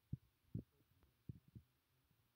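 Near silence, broken by a few faint, short, low thumps.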